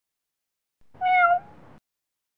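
A cat's single meow, starting about a second in, its pitch dipping slightly, then trailing off faintly and cutting off.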